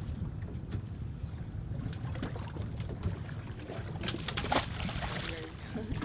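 Wind and water slapping against the hull of a drifting fishing boat, a steady low rumble with a few light clicks and knocks and a brief splashy hiss a little past the middle.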